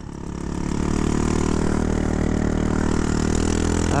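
Straight-piped GY6 150cc four-stroke scooter engine in a Honda Ruckus, picking up revs over the first second and then running steadily.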